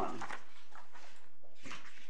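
Sheets of paper rustling and pages being turned in uneven bursts, with a sharper rustle near the end, as court papers are leafed through to find a cited paragraph.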